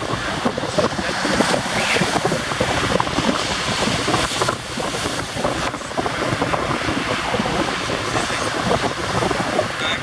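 Wind buffeting the microphone, with the wash of surf beneath it. The wind noise rises and falls unevenly and drowns out everything else.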